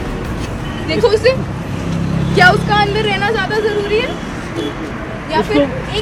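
Voices talking in short stretches over a low, steady rumble of street traffic.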